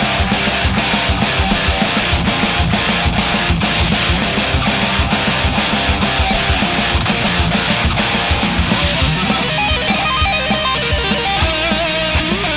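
Distorted Ibanez electric guitar playing a fast heavy metal part over driving drums, with held, bending notes near the end.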